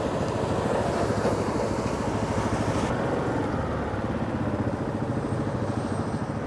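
An engine running steadily, with a fast, even pulsing beat.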